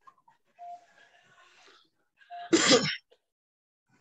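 A single short, loud, breathy burst from a person, about two and a half seconds in, after faint room noise.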